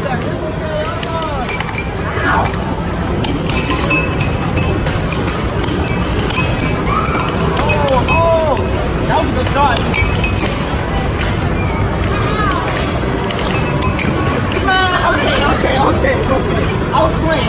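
Busy arcade din: crowd chatter and electronic game music and jingles, with sharp clacks of an air hockey puck hitting the mallets and the table's rails.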